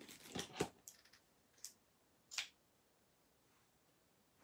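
Scissors snipping a few times, short crisp cuts in the first two and a half seconds.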